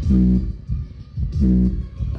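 A pair of small 3-inch woofers in a box, driven by a Blitzwolf portable speaker's amplifier not yet at full volume, playing music with a bass guitar line. Two loud bass notes stand out, one at the start and one about a second and a half in.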